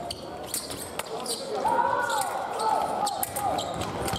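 Fencing footwork and bladework: a run of sharp clicks and taps from foil blades and feet on the piste, with rising-and-falling shoe squeaks in the second half.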